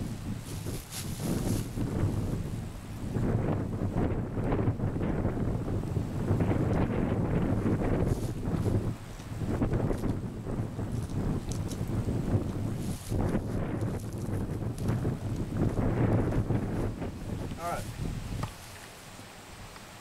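Wind buffeting the camera microphone in a steady low rumble that gusts up and down, dying down sharply near the end.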